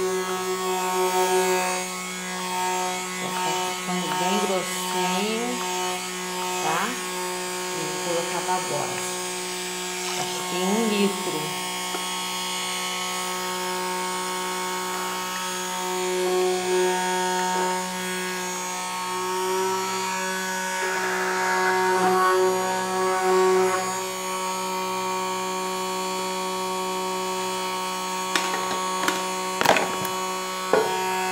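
Handheld electric stick blender running with a steady motor hum, submerged in a large tub of soap batter and mixing the oil and caustic-soda mixture.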